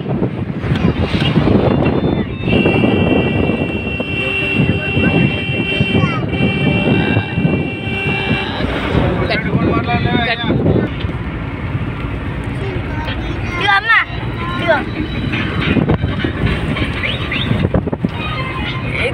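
A car driving along a road, its road and wind noise coming in through the open window. A steady high whine holds for about six seconds, from a couple of seconds in to about halfway. Voices are heard now and then.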